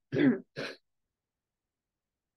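A woman briefly clears her throat near the start.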